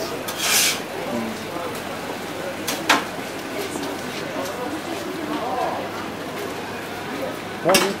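Busy kebab-counter sounds: metal serving spoons scraping and clinking in steel food trays as a wrap is filled, with one sharp click about three seconds in, over a low background of voices.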